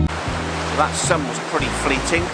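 Sea surf on the beach, a steady rushing wash of waves, with background music's low sustained tones carrying on underneath.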